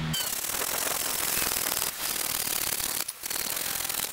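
Crosscut saw cutting through a buckeye log by hand: steady rasping back-and-forth strokes, with short breaks a little under two seconds in and about three seconds in.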